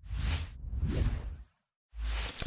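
Two whooshing swells of noise, the second longer, each rising and falling, followed by a brief dead silence.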